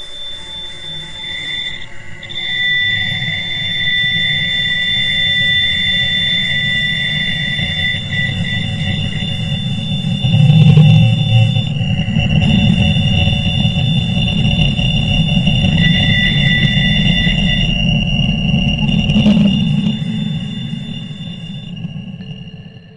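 Audio rendering of the 1977 Wow! radio signal: several steady high whistling tones held over a low rumbling noise. It grows louder about two seconds in and swells to its loudest about ten seconds in.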